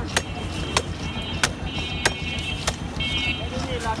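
Sharp clicks, five of them about half a second apart, as a carp is cut against a bonti blade. A steady low traffic rumble runs underneath, and a high-pitched tone comes and goes in short stretches.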